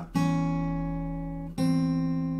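Acoustic guitar played with the fingers: two chords struck and left ringing, the second about a second and a half after the first.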